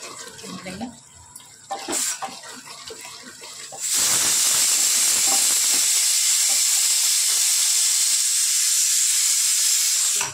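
Green kheema cooking in an open pressure-cooker pot on a gas burner, a wooden spoon stirring it with light scraping. About four seconds in, a loud steady hiss starts abruptly and runs until it cuts off suddenly at the end.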